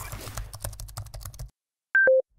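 Keyboard typing sound effect: a quick run of key clicks over a low rumble for about a second and a half, then a short high electronic beep near the end.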